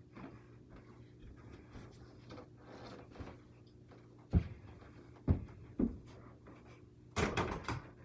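A mini basketball thudding three times, about a second and then half a second apart, then a short burst of scuffing and rustling near the end.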